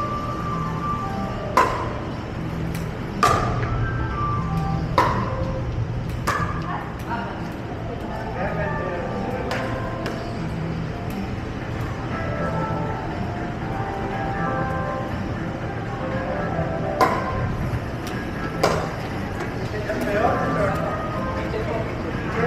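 Pickleball rally: paddles striking a hard plastic ball in sharp pops one to two seconds apart, a run of hits in the first ten seconds and two more near the end, over background music and voices.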